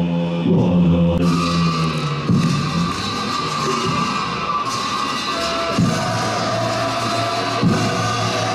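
Deep, sustained monastic chanting for the first two seconds, giving way to Tibetan Buddhist ritual music with steady held tones and a bright, continuous wash of sound over them.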